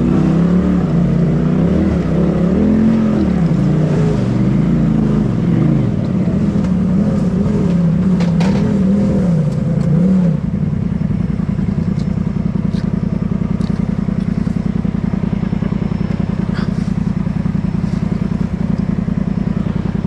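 Polaris RZR side-by-side engine revving up and down in repeated bursts as it crawls over rocks. About halfway through it drops to a steady idle.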